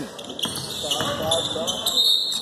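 Basketball bouncing on a hardwood gym floor during play, with knocks about half a second and a second in, under the voices of spectators.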